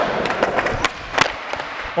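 Skateboard wheels rolling on a smooth concrete floor, then several sharp knocks as the board is popped for a big flip and clatters back down, the loudest about a second in. The trick is not landed.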